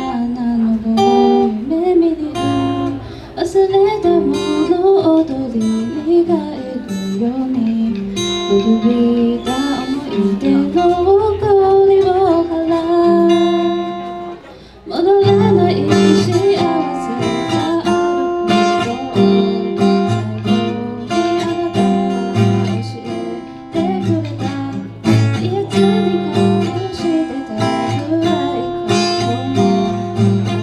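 A woman singing while strumming an acoustic guitar. About halfway through the sound briefly drops away, and then the strumming comes back fuller and heavier under the voice.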